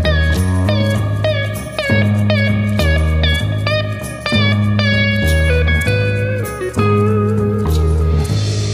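Instrumental section of a psychedelic hard rock song: a lead guitar plays quick repeated notes that bend upward, over bass guitar and drums. Near the end it settles on one held note with vibrato.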